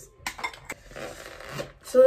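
Small cosmetics such as mascara tubes being handled and packed into a fabric makeup pouch: a few small clicks and knocks, then a rustle lasting just under a second.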